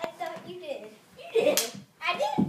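Children's voices, indistinct chatter with a louder exclamation about one and a half seconds in, and a sharp click at the very start.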